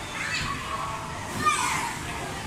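Children playing and chattering, with a louder high-pitched child's cry about one and a half seconds in.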